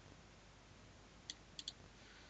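Near silence with three faint computer mouse clicks in the second half, the last two close together.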